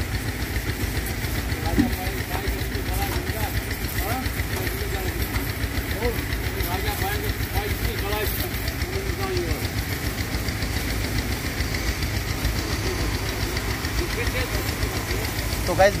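Small tractor engine running steadily while it drives a water pump, with the hiss of a pressure-hose spray washing a truck.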